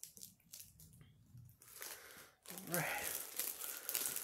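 Mostly quiet at first, then about two and a half seconds in, a packaged sandwich's plastic wrapping crinkles as it is handled, with a brief vocal sound as it starts.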